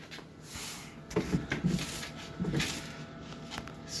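Rustling and light bumps of a phone camera being handled and carried around a generator, with two brief low-pitched sounds about a second and two and a half seconds in.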